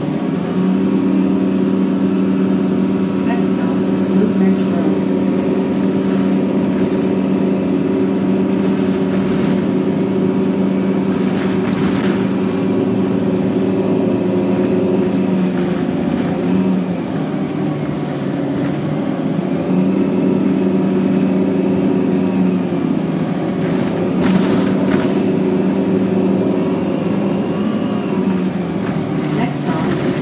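Inside a TTC 2009 Orion VII NG diesel-electric hybrid bus on the move: a steady droning hum from the hybrid drivetrain, easing a little past halfway and then building again. A few sharp knocks from the bus body are mixed in.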